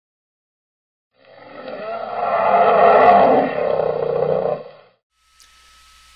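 A loud roar, likely an intro sound effect, that swells up over about two seconds and dies away just before the five-second mark.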